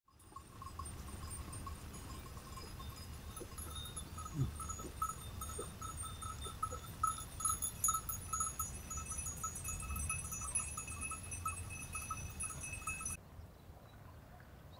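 Bells on a flock of sheep, clinking and ringing continuously as the flock moves, many overlapping metallic tones at once. The sound cuts off suddenly near the end.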